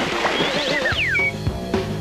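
Short TV bumper jingle: wavering and falling whistle-like glides in the first second, then music with a steady beat comes in about halfway.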